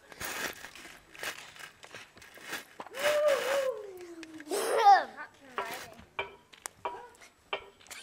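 A young boy's voice making wordless sounds: breathy puffs of noise, a drawn-out hum falling in pitch about three seconds in, then a short rising cry near the middle, the loudest moment, with small clicks around it.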